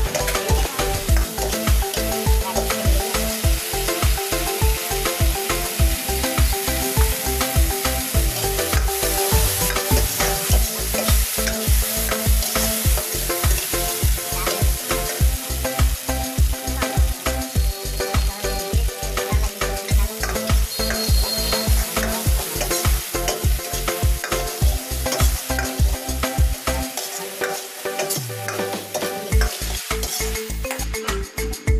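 Chicken pieces in sauce sizzling as they fry in an iron wok, a steel ladle stirring and scraping the pan, under background music with a steady beat. The beat drops out for a couple of seconds near the end.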